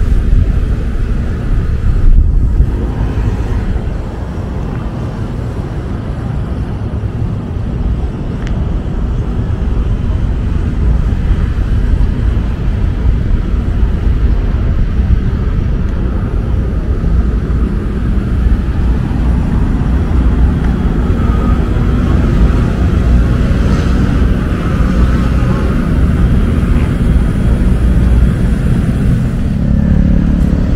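Outdoor traffic noise from a road alongside, under a steady low rumble of wind on the microphone. Near the end a nearby engine's hum joins in.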